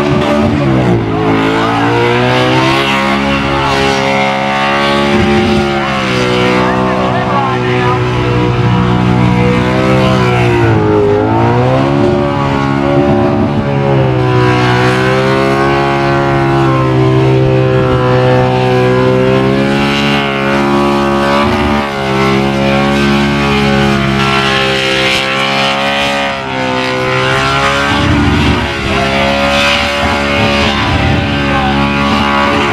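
Holden VK Commodore's carburetted engine held at high revs in a burnout, the rear tyres spinning on the pad. The engine note dips and climbs back about a second in and again around eleven seconds in.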